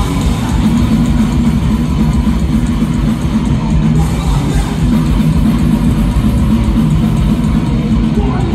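Hardcore punk band playing live at full volume: distorted electric guitars, bass and a drum kit, heavy and dense in the low end, heard from within the crowd.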